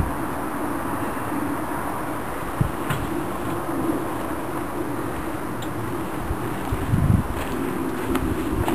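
A steady low buzzing drone, with a soft thump about two and a half seconds in and another near seven seconds.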